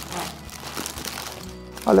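Paper sandwich wrappers crinkling and rustling as two burgers are unwrapped by hand, with faint background music underneath.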